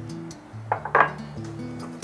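Background music with a steady bass line. About a second in, a few sharp clinks and scrapes of a spatula against a glass mixing bowl as caster sugar is beaten into creamed butter.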